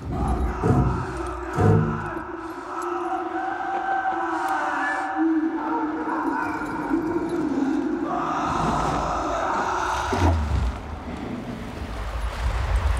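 Film soundtrack: a sustained score of held, slowly shifting tones, with deep booms about half a second and a second and a half in and again about ten seconds in.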